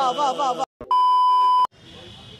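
A loud, steady electronic beep at a single pitch lasts about three-quarters of a second and cuts off abruptly. Just before it, a chanted vocal music track stops short and a brief silence follows. Faint outdoor background noise comes in near the end.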